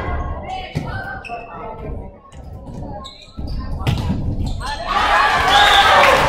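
Volleyball rally in a gymnasium: the ball struck with several sharp smacks between scattered shouts, then players and spectators shouting and cheering as the point ends, about five seconds in.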